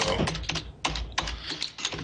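Typing on a computer keyboard: a quick, irregular run of about eight keystrokes.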